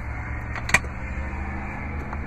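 Steady low hum of an idling engine, with a single sharp click a little under a second in as a plastic pull handle in the cargo floor is grabbed.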